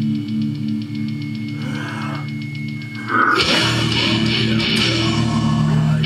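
A recorded guitar-driven rock song playing loud: a quieter passage with an evenly pulsing low riff, then about three seconds in the full band comes in, much louder and fuller.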